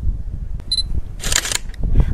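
A camera taking a photo: a short high beep about two-thirds of a second in, then the shutter firing in one brief burst about a second and a half in.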